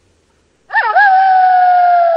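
Gray wolf howling: after a short silence, one long howl begins with a quick wavering swoop up and down, then holds a steady tone that slowly sinks in pitch.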